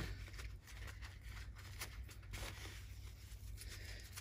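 Faint rustling of a folded paper towel being handled, with a few soft crinkles, over a low steady hum.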